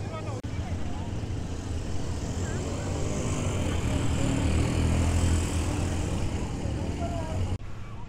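Quad bike (ATV) engines running, a low steady drone that swells a little around the middle, with faint voices.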